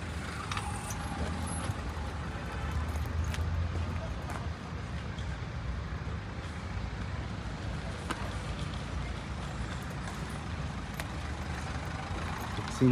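Steady low rumble of a motor vehicle running nearby, swelling a little a few seconds in, with a few faint clicks.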